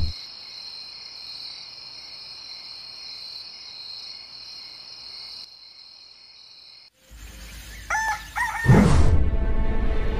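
Steady high chirring of night insects fades out about five and a half seconds in. After a short silence a low rumble comes in, a rooster crows about eight seconds in, and loud music with a deep bass starts just before the end.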